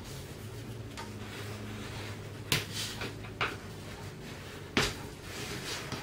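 A sheet of cardstock being folded and creased by hand with a bone folder on a wooden table: a few short handling sounds of the stiff paper between about two and a half and five seconds in, the loudest near five seconds.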